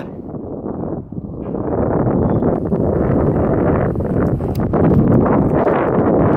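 Wind buffeting the camera microphone, a loud rough rumble that grows over the first couple of seconds and then holds, with rustling and small knocks as the camera is moved about.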